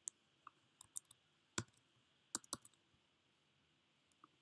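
Faint, scattered clicks of a computer keyboard and mouse, about a dozen over the first three seconds, the loudest about a second and a half in.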